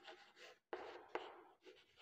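Chalk writing on a chalkboard: faint scratching strokes with a few sharp little taps as the chalk strikes the board.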